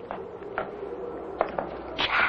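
Footsteps of people walking slowly along a corridor: a few soft, unevenly spaced steps over a faint steady hum.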